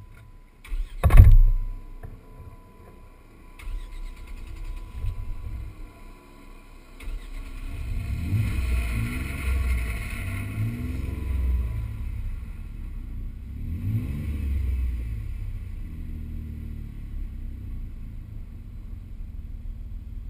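A loud thump about a second in. From about seven seconds a four-wheel-drive's engine revs up and down several times as it drives through mud, then settles into a steadier run near the end.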